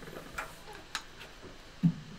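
A few sharp handling clicks near a studio microphone, with one short, louder low thump near the end.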